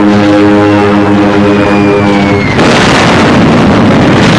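Steady drone of a bomber formation's propeller engines, with a faint whistle falling in pitch over about two seconds as a bomb drops. About two and a half seconds in, a sudden loud explosion cuts in and continues as a rough, noisy blast.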